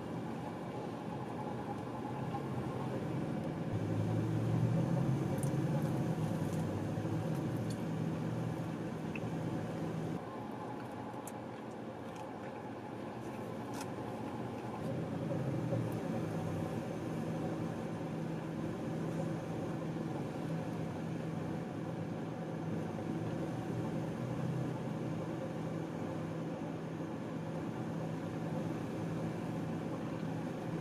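Car engine idling, heard from inside the cabin: a steady low hum that swells and eases a little, with a few faint clicks.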